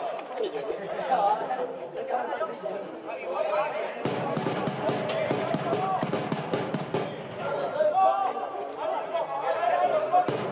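Indistinct chatter and calls from several voices of football players and onlookers, no words made out, with a busier stretch of overlapping voices from about four seconds in.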